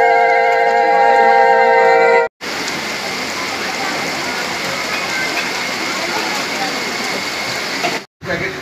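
A chord of held musical notes, cut off abruptly about two seconds in. After a brief gap comes a steady, hiss-like crowd noise with faint indistinct chatter, typical of a busy hall.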